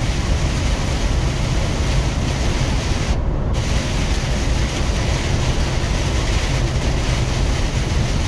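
Heavy rain drumming on a semi-truck's windshield and cab over the steady rumble of the truck's engine and tyres on the wet highway, heard from inside the cab. The rain hiss cuts out for about half a second a little over three seconds in as the truck passes under an overpass.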